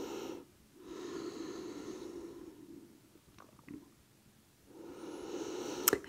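A woman's slow, deep breathing: one long breath ending about half a second in, another from about one to two and a half seconds, and a third starting near the end, with a quiet gap and a few faint ticks between.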